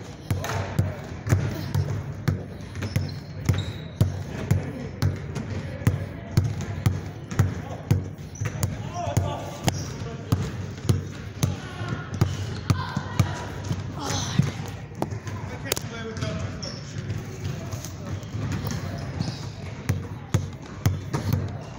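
Basketball dribbled hard in repeated crossovers between the legs, a steady rhythm of sharp bounces, about three every two seconds.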